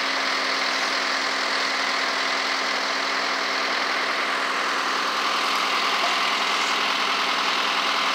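Heavy work-vehicle engine idling steadily, an even hum with a constant low tone.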